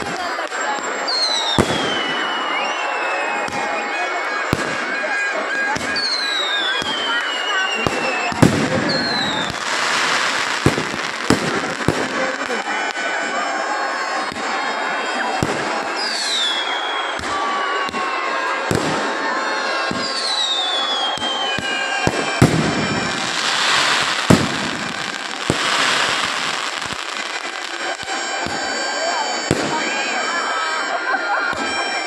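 Fireworks going off over a large crowd: about five whistling fireworks, each whistle falling in pitch over a second or two, and several sharp bangs scattered among them, over the steady noise of the crowd.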